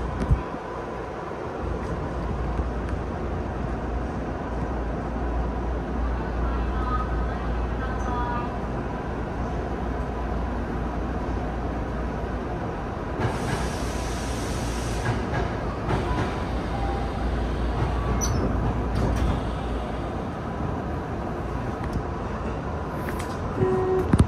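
Tokyu 5000-series electric commuter train standing at a station platform: a steady low hum of the idling train with a faint steady tone, a few short tones about seven seconds in, and a hiss lasting about two seconds around the middle.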